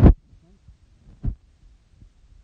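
Wind buffeting a phone's microphone in two short low thumps, a loud one at the start and a weaker one about a second later.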